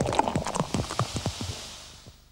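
Beer glugging out of a bottle in a quick run of knocks, over a high foaming fizz that fades away near the end.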